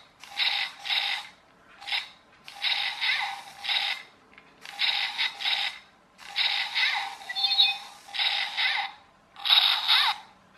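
Infrared remote-control toy robot's small drive motor and gears whirring in repeated short bursts, about one a second with brief pauses between, as it drives across a hard wooden floor.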